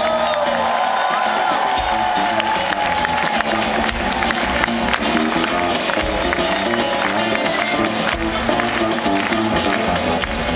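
Live band with violin, guitars, accordion and drums playing an instrumental passage, a sustained high note held over a busy rhythmic accompaniment. The bass drops out briefly near the start and comes back in about two seconds in, with crowd cheering and applause underneath.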